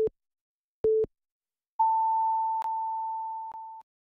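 Radio hourly time signal: the tail of one short beep, another short beep about a second in, then a long tone an octave higher that lasts about two seconds and marks the exact hour, 1 o'clock.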